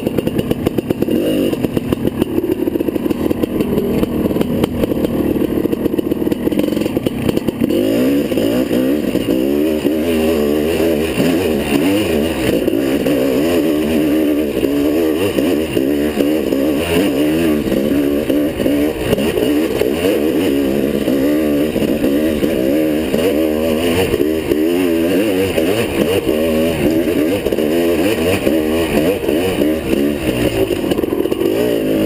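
Off-road motorcycle engine under constant throttle changes, its pitch rising and falling again and again as the bike is ridden along a dirt trail.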